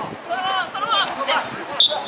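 Shouts and calls from players on a football pitch during open play, mixed with a couple of short, dull thuds of the ball being kicked.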